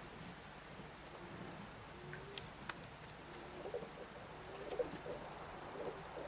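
Domestic pigeons cooing: soft, low warbling coos that come more often in the second half, with a few faint sharp clicks.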